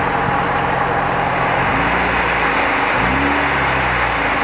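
Heavy diesel dump truck running as it tips its raised body and dumps soil, with a rushing noise throughout. The engine pitch steps up twice, about two seconds in and again at about three seconds, as it is revved to work the tipping hydraulics.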